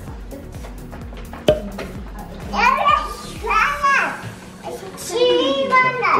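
Background music with a steady beat, fading out partway through. A young child's high-pitched voice then calls out twice. A single sharp click comes about a second and a half in.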